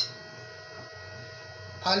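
Steady electrical hum, a constant tone with several fixed overtones, with a brief light clink of a small dish at the very start.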